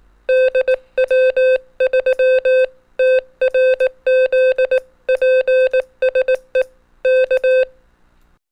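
Morse code sent as a keyed beeping tone, short dots and long dashes in letter groups, spelling out the call sign DW3TRZ.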